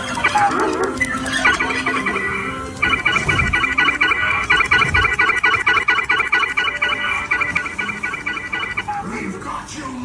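Dark-ride soundtrack music with a rapid, pulsing electronic tone that starts about a second and a half in, grows louder about three seconds in and stops near the end.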